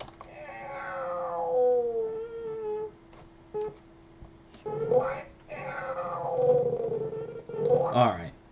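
A long, drawn-out meow, heard twice, each about three seconds and sliding down in pitch: the sound track of a cartoon cat animation playing back in a loop. A faint steady hum runs underneath.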